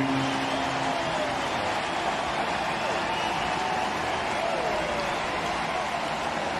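Large ballpark crowd cheering steadily after a home-team home run.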